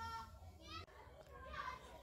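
Faint voices of children in the background, with a low steady hum underneath.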